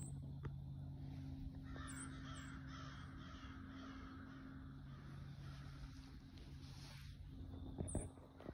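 Faint repeated bird calls over a low steady hum, strongest in the first half.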